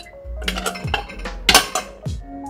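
Dishes and bowls clinking together as they are handled, a few light clinks with the loudest about one and a half seconds in, over soft background music.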